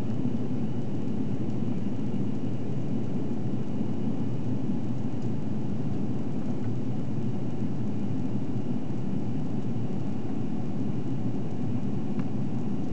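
Steady low roar of engine and airflow noise inside the cabin of an Airbus A340-300 in flight, with a faint steady high whine above it.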